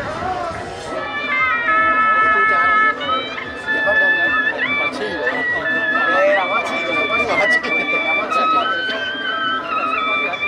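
Suona (Chinese shawm) playing a melody of long held notes that step up and down in pitch, over crowd chatter.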